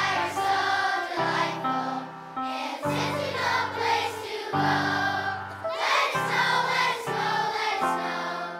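Large children's choir singing a song, in phrases of notes held about a second at a time.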